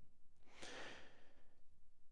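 A faint breath, a single intake of air lasting about a second.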